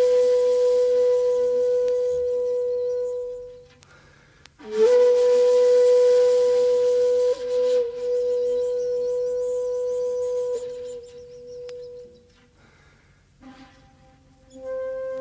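Shakuhachi playing two long held notes, with strong breath noise in the tone. The second note begins about halfway through with an upward slide into the pitch, bends slightly twice, then fades away, leaving a near-quiet pause before the next note starts at the very end.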